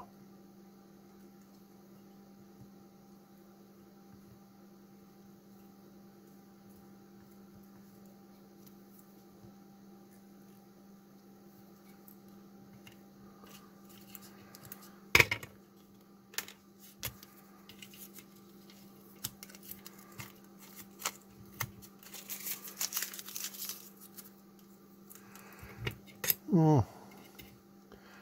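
Steady low hum, then scattered clicks and taps as a small circuit board is handled and turned over in a PCB holder. One sharp click comes about fifteen seconds in, and a short rustle near the end, like painter's tape being handled.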